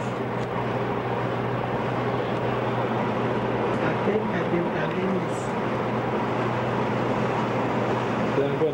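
Steady hiss from a two-way radio receiver with faint, broken voices coming through it and a constant low hum.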